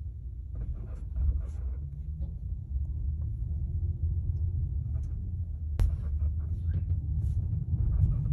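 Low rumble of road noise inside a moving Polestar 2 electric car, with faint high squeaks now and then and one sharp click about six seconds in. The squeak comes from the rear end, which viewers suggested could be a dust cover on one of the rear dampers.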